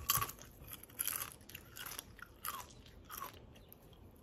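Doritos tortilla chips being chewed: a run of irregular, crisp crunches, thinning out near the end.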